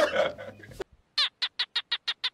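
Laughing and talking, then a sudden cut about a second in to a small animal calling: a rapid, even run of short high chirps, about seven a second, each dropping in pitch.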